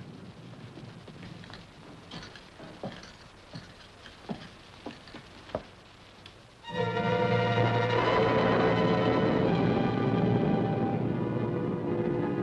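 A few soft, scattered knocks over a quiet background, then a little past halfway an orchestral film-score cue comes in abruptly, with strings playing sustained chords.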